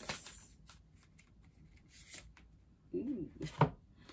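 A deck of tarot cards being shuffled by hand: faint, soft clicking of cards for about two seconds, then one sharp knock near the end, the loudest sound.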